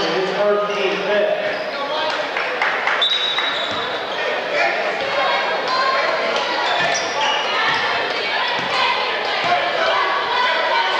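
A basketball being dribbled on a hardwood gym floor, the bounces echoing in the gymnasium over the spectators' chatter.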